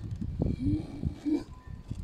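Rubbing and handling noise from a 4 mm silicone vacuum hose being forced onto a plastic washer-pipe fitting, with two short low squeaks.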